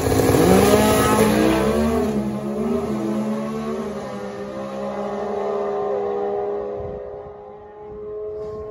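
Competition Eliminator drag race cars launching and accelerating hard down the strip. The engine note is loudest and climbing in pitch in the first second or two, then fades as the cars pull away, leaving a steadier engine tone near the end.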